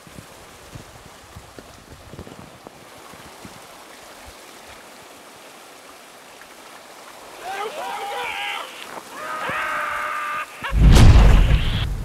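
Water running down the inside of an enclosed water slide tube, a steady rushing hiss. A man's voice comes in about seven and a half seconds in, and near the end there is a sudden loud, deep burst of sound.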